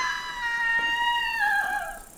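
A single long, loud, high-pitched cry that swoops up at the start, holds steady, and dips in pitch near the end.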